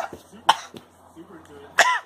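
A person coughing in short, sharp bursts: two coughs, the second and louder one near the end.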